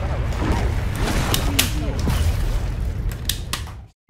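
Gunshot sound effect fired from a toy 'irony pistol': a dense, rumbling burst of gunfire with several sharp shots, mixed with a voice, cutting off abruptly just before the end.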